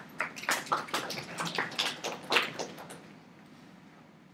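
A quick run of irregular taps and knocks, about a dozen in under three seconds, that fades off before the end.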